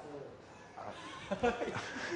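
Indistinct voices in the room. They come in about a second in and swing quickly up and down in pitch, with no clear words.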